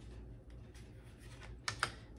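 Light clicking and tapping from thin wooden ornament blanks being handled and set against one another, with two sharper clacks close together near the end.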